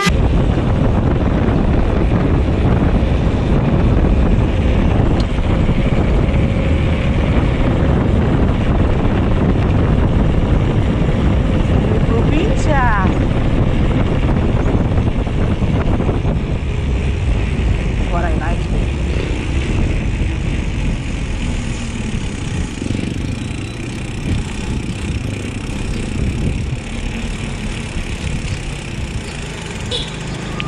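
Wind buffeting a GoPro Hero 7's microphone and tyre noise as a mountain bike rolls along a concrete road: a steady, loud low rumble that eases a little in the last third. A couple of brief pitched chirps cut through, about 12 seconds in and again around 18 seconds.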